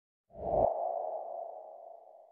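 Intro logo sound effect: a low hit about a third of a second in, followed by a ringing tone that slowly fades away.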